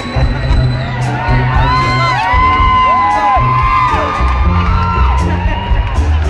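Live band playing an instrumental passage, with upright bass notes, acoustic guitar and drums, while the audience whoops and cheers over it for a few seconds in the middle.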